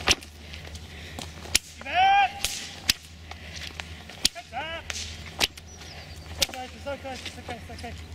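A hunting whip cracked sharply about seven times at uneven intervals to turn hounds back, with short high calls in between.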